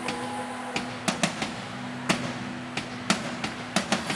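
Live band in a sparse passage of a song: sharp percussive hits, about ten at uneven spacing, over a low held note, with no singing.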